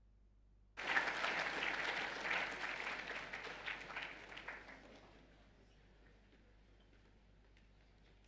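Audience applauding: the clapping cuts in suddenly about a second in, then dies away by about five seconds.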